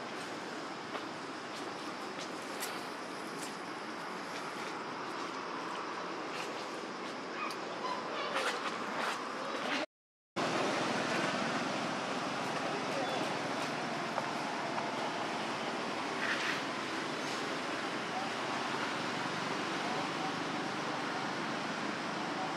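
Steady outdoor background noise with distant voices, and a few faint, short, high calls in the middle and again later. About ten seconds in, the sound drops out completely for half a second, then the background carries on.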